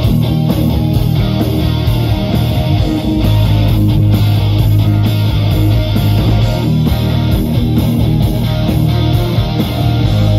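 Live rock band playing an instrumental passage: electric guitars, bass guitar and drum kit, loud and steady throughout.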